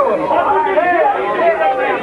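Several people's voices talking over one another, with no clear words, in a thin, band-limited camcorder recording.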